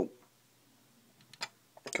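Small sharp clicks of fingers and fingernails working at the hood of a 1:24 scale diecast stock car, trying to pry it open. There are a couple of clicks past the middle and a quick cluster of them near the end.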